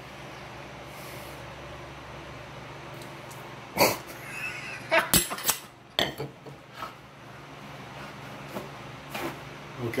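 Metal cocktail shaker and glassware handled on a stone counter during a pour that goes astray. A sharp knock comes a little before four seconds in, then a quick cluster of clinks and knocks, then a few lighter taps.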